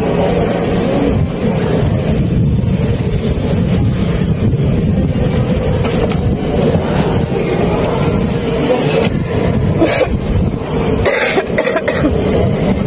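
A loud, steady low rumble of background noise, with a few short sharp rustles or knocks from about ten seconds in.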